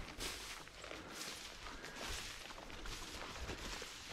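Footsteps brushing through tall wet grass, faint and steady.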